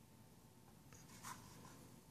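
Near silence, with two faint, short scuffs about a second in from a Kydex holster being handled and turned over in the hand.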